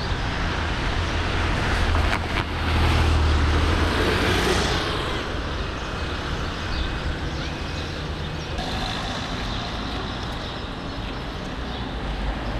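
Street traffic noise from vehicles going by. One vehicle passes close, loudest about three to four seconds in.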